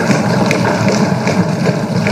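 Many legislators thumping their wooden desks in applause, a dense, steady clatter of knocks from all over the chamber.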